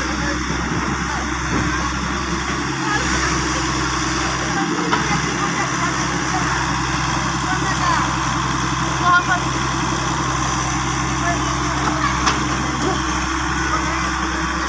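Hitachi EX100WD wheeled excavator's diesel engine running steadily while the machine digs and swings its bucket of soil.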